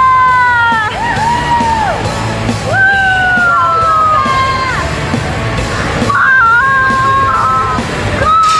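A high voice yelling in three long drawn-out cries, each held for a second or two and dropping in pitch at its end.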